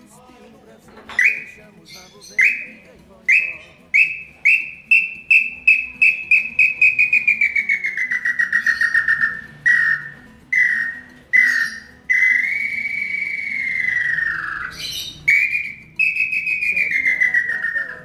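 Hand-held bird-call whistle (pio) blown to imitate a bird: single whistled notes that speed up into a quick run sliding slowly down in pitch, then a few spaced notes, one long whistle that rises and falls, and a last run of notes.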